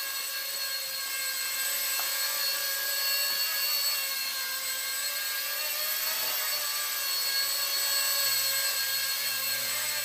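Micro electric RC Bell 222 (Airwolf) helicopter in flight: a steady high-pitched whine from its electric motors and rotors, made of several even tones, wavering slightly in pitch around the middle.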